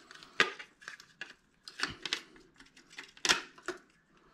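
An internet modem's plastic case and circuit board clicking and clattering as the board is pulled out of the housing by hand: a string of separate sharp clicks and knocks, the loudest near the start and again about three seconds in.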